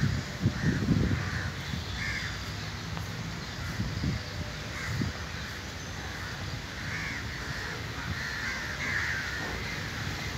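Crows cawing again and again, a few caws early on and a closer run of caws in the last few seconds. Low bumps on the microphone near the start and again around four and five seconds in.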